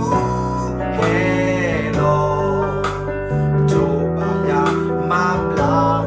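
A man singing a worship song over a strummed guitar accompaniment.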